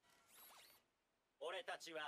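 Anime episode audio at low level: a faint, brief swish with gliding pitch, then a character's voice speaking about one and a half seconds in.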